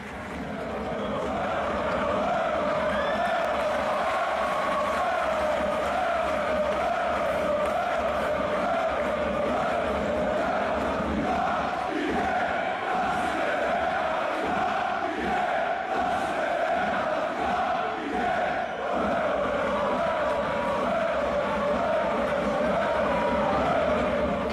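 A crowd of fans chanting together, one steady, unbroken chant.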